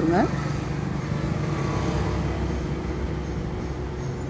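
A steady low motor hum with no breaks, after a voice that trails off in the first moment.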